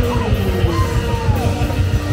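Live band playing loud music with a voice singing and yelling over a steady beat, heard from among the crowd.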